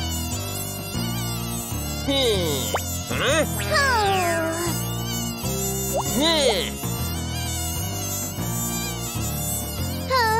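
Cartoon sound effect of a swarm of mosquitoes buzzing, a steady insect whine, with pitch glides sweeping up and down a few times between about two and four seconds in and again around six seconds.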